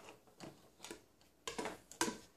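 A few light clicks and taps of small plastic toy tea set pieces being handled on a table, about four short ticks in two seconds.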